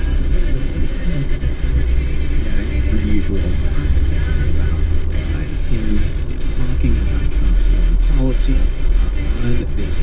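Steady low road rumble of a moving car, with a radio news broadcast's voice faintly heard over it.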